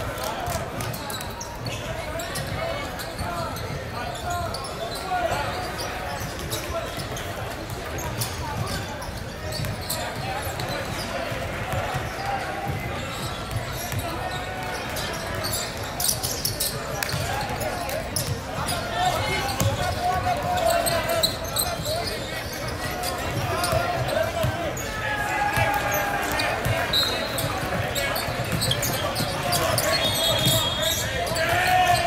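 A basketball being dribbled and bouncing on a hardwood court during play, with players and spectators calling out and talking.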